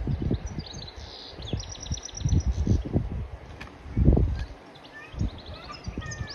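Wind buffeting the microphone in irregular gusts, with small birds chirping in the background, including a quick run of chirps about two seconds in.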